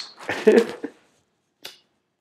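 A short, loud burst of a man's voice or breath in the first second, then a single sharp click about one and a half seconds in.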